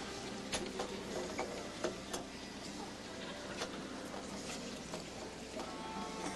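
Arena crowd murmur with a few short, sharp thuds of a gymnast's feet landing on the balance beam, spread over the first four seconds.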